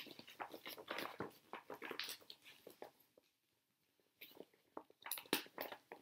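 Clear plastic document envelope crinkling and rustling as a folded piece of stitched linen is slipped inside it, in faint irregular crackles and clicks, with a pause of about a second in the middle.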